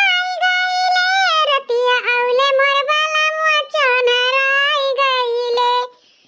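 A single very high-pitched singing voice holding long, gliding notes of a song line, with no clear instrumental backing; it stops abruptly just before the end.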